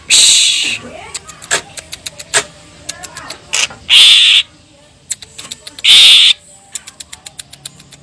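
Caged cucak ijo (green leafbird) calling: three loud harsh rasping bursts, near the start, at about four seconds and at about six seconds, with rapid dry ticking notes between them.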